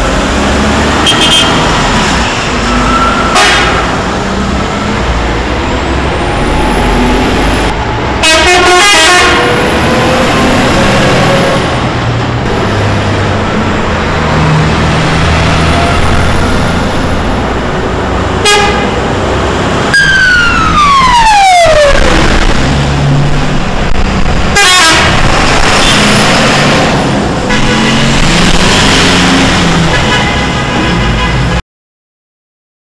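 A convoy of heavy trucks running past, their engines rumbling, with several short horn blasts honked at intervals and, about two-thirds through, a siren tone falling in pitch.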